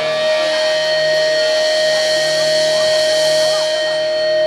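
Live band's electric guitars through Marshall amplifiers holding a steady, ringing drone of sustained tones, with no drums.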